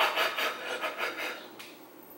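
Rubbing and rustling handling noise as makeup brushes and items are rummaged through at close range: a quick run of scraping strokes in the first second or so, then fading.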